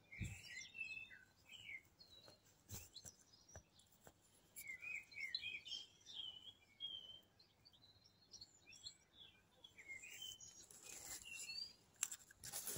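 Faint songbird singing in short twittering phrases of high, quick chirps, coming in three bouts with gaps between. A few soft knocks sound in the first few seconds.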